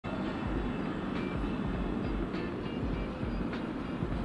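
Steady low rumbling background noise with a few faint brief higher tones over it.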